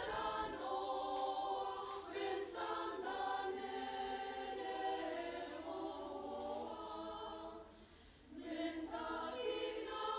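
A women's choir singing with held notes, breaking off briefly about eight seconds in before the singing resumes.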